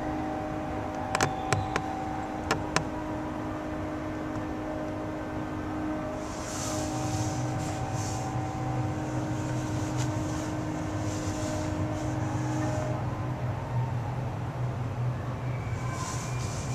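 Ice hockey rink sound: a handful of sharp clacks in the first three seconds over a steady hum with a few held tones, then hissing scrapes of skates on the ice from about six seconds in.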